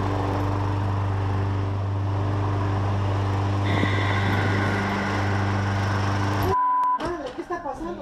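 Petrol push lawn mower engine running steadily, with a higher whine joining about halfway through, then cutting off abruptly. A short beep follows, and then a man's shouted exclamation.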